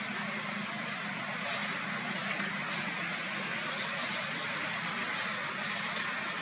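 Steady outdoor background noise: a continuous hiss with a faint low hum underneath and no distinct event.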